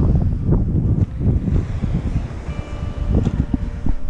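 Wind buffeting the microphone: an uneven low rumble that surges and drops in gusts.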